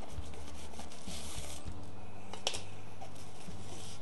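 Hands handling small plastic-bagged accessories in a fabric carrying case, with faint rustling and one light click about halfway through, over a steady low hum.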